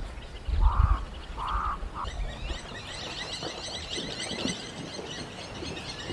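Three short calls spaced about half a second apart in the first two seconds, then many small birds chirping continuously. A low wind rumble sits under the first second.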